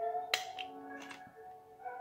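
Two sharp plastic clicks, about a third of a second in and again about a second in, as a CD jewel case's centre hub is pressed and lets go of the disc, over background music with held tones.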